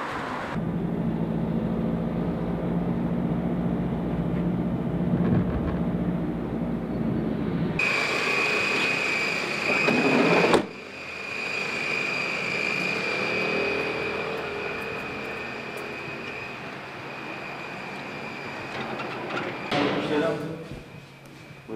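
Street ambience with a steady low engine hum from traffic. Partway through, this gives way to a steady high-pitched whine over a noise background.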